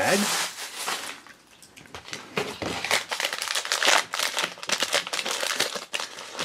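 Crinkling of a plastic blind-bag wrapper being handled and opened: a quiet start, then a dense run of crackles from about two seconds in.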